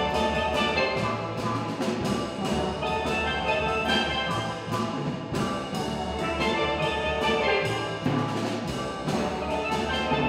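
Steel drum band playing a tune in rhythm: many steel pans struck together, with large bass pans underneath.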